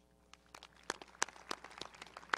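Scattered hand claps start about half a second in and come faster and faster: applause getting under way, with single claps standing out.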